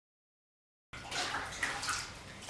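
Water poured from a plastic scoop into a plastic bucket, splashing and filling it; it cuts in suddenly about a second in after dead silence.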